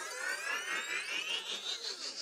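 Cartoon glowing sound effect: a dense cluster of shimmering tones that all glide steadily upward together, like a rising whistle.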